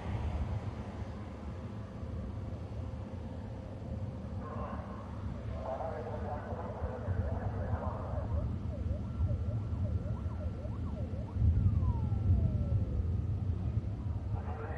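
Low, steady rumble of a distant Soyuz rocket in powered flight, growing louder about three-quarters of the way through. Faint radio voice chatter sits over it in the middle, followed by a few short sliding electronic chirps and one long falling tone.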